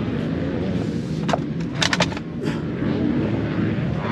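Steady engine noise from motor vehicles, with a few sharp clicks about one and two seconds in.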